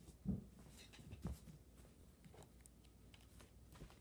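Near silence: quiet room tone with a few soft thumps, the first about a third of a second in and another just over a second in.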